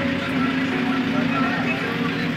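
Steady drone of a bus's engine and road noise heard from inside the cabin, with rain on the bodywork and passengers' voices mixed in.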